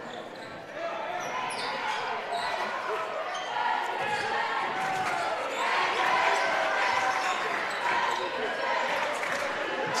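Basketball game sound in a school gym: a ball dribbling on the hardwood floor, with crowd chatter and players' calls in the background.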